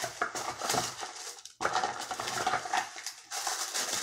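Tissue paper rustling and crinkling in a cardboard gift box while small packaged items are handled, with light clicks and knocks. There is a brief pause about one and a half seconds in.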